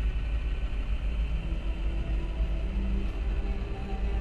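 Background score: a sustained low rumbling drone with several long held tones over it, steady throughout.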